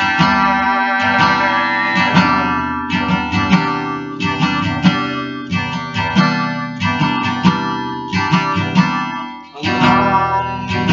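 Steel-string acoustic guitar strummed in a steady rhythm, the chords ringing between strokes. The strumming dies down briefly near the end, then starts again.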